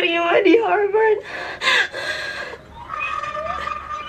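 A young woman crying for joy: tearful, wavering words broken by gasping sobs, then a long, high held whimper near the end.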